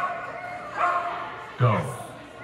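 Brittany spaniel vocalizing: a short high whine about a second in, then a louder, sharp yip-bark with a steeply falling pitch near the end.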